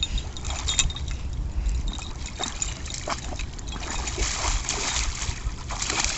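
A German Shepherd–Border Collie mix wading in shallow lake water with its head down, making small splashes and trickles that grow into more continuous sloshing in the last couple of seconds, over a steady low rumble.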